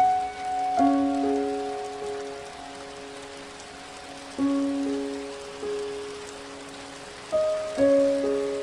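Steady rain falling, with a slow piano melody over it: soft notes and chords struck every second or few, each left to ring and fade.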